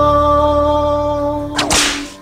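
The song's last chord held and slowly fading, then a short whip-crack sound effect near the end.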